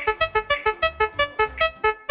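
Spin-wheel sound effect: a run of short electronic keyboard-like notes, one per tick of the spinning wheel, slowing from about six a second to about four as the wheel loses speed.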